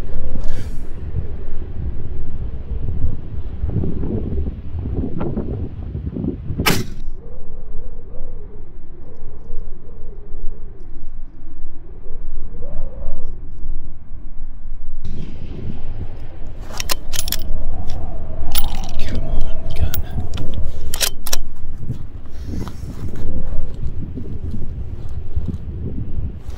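Heavy wind buffeting the microphone, easing for several seconds in the middle, broken by a single sharp crack about seven seconds in and a cluster of sharp cracks and clicks in the second half.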